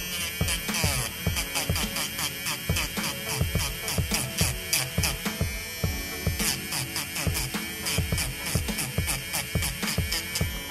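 Background hip-hop-style music with a steady beat, over the steady whine of a cordless electric nail drill whose sanding band is buffing excess gel from the edge of a press-on nail.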